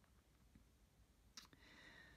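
Near silence, broken by a single mouth click about one and a half seconds in, followed by a faint intake of breath.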